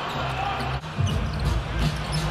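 Basketball game sound: a ball being dribbled on the hardwood court, with short sharp strikes in the second half, over arena music with a steady bass line.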